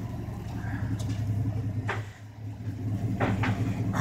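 2002 Dodge Ram pickup's engine idling with a steady low hum. The hum dips briefly about two seconds in as the truck is shifted into reverse, with a few faint clicks.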